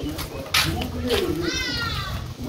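People talking in the background, with a child's high-pitched, slightly falling call near the end.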